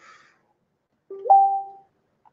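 A two-note electronic chime from the computer: a short low note, then a higher note held for about half a second.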